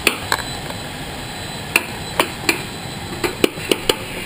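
Scattered sharp knocks and clicks, about a dozen, mostly in the second half: hands, feet and the camera bumping the rungs, handles and metal structure while climbing up through the hatch.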